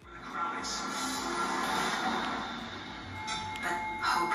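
Music from Netflix content playing through the Samsung M8 monitor's built-in speakers and picked up across the room. It sounds a little tinny, with little bass, as is typical of the slim monitor's small speakers.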